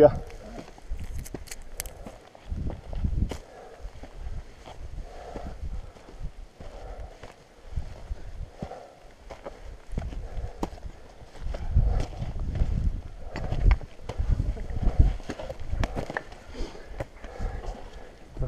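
Footsteps in riding boots scrambling over loose rock on a steep slope, with heavy breathing and irregular low thumps and knocks as a dirt bike is pushed uphill by hand.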